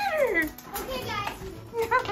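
A dog whining at a closed door, a few high whines whose pitch rises and falls, one at the start and another near the end: it wants to get to the other dog on the far side.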